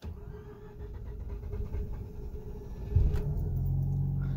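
2006 Mazda RX-8's 1.3-litre two-rotor rotary engine cranking on the starter for about three seconds, then catching about three seconds in and running at a raised idle of about 2,000 rpm.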